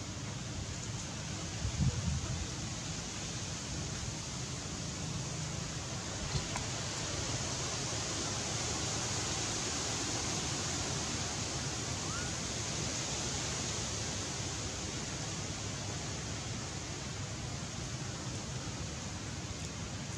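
Steady outdoor background hiss, with a brief soft knock about two seconds in.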